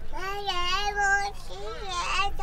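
A toddler singing in long, held high notes.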